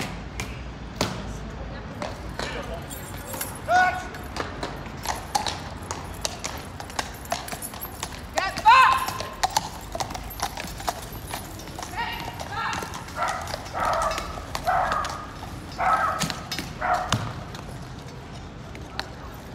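Shod cavalry horses' hooves clopping on the paving as the horses walk, with onlookers' voices talking over them and a loud call about halfway through.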